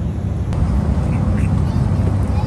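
Airliner cabin noise: the steady low rumble of the jet engines and airflow. A couple of short, high squeaks come a little over a second in.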